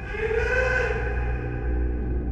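Eerie horror film score: a low rumbling drone with a layered, held tone that swells in just after the start, peaks around the middle and slowly fades.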